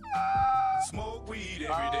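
A man's high-pitched, drawn-out laughter: two long held laughs, the second starting a little past halfway.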